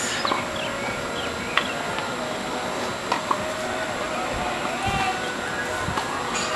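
Faint, distant talking over steady outdoor background noise on a tennis court, with a few sharp single knocks: one about a second and a half in, and two close together about three seconds in.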